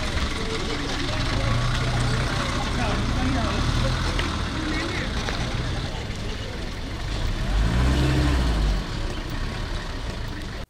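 Ambulance van's engine running as the van moves off slowly, with the engine note swelling and rising about eight seconds in, over a steady background of outdoor noise.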